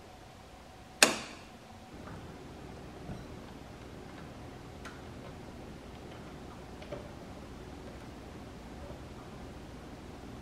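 A 15-amp household circuit breaker switched off by hand: one sharp snap about a second in, with a short ring. Then a few faint ticks while screws are refitted on a ceiling fan's light kit.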